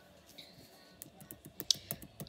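Computer keyboard typing: a quick, irregular run of key clicks that starts about a second in.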